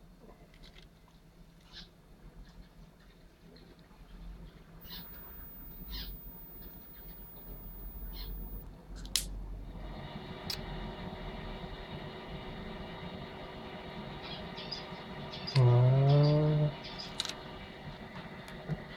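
Faint clicks and rustles of gloved hands handling a syringe and a feeder mouse over a plastic tub. From about ten seconds in a steady hum joins, and near the end comes one loud pitched sound about a second long that rises in pitch.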